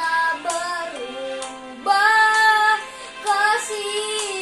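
A young boy singing solo, a Christian praise song in Indonesian, moving through several notes and holding a long one about two seconds in.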